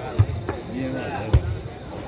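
Two sharp thuds of a footvolley ball being struck by players during a rally, a little over a second apart, over spectators' chatter.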